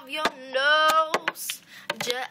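A young girl singing unaccompanied, holding one sung note for about half a second in the middle, with several sharp clicks scattered through.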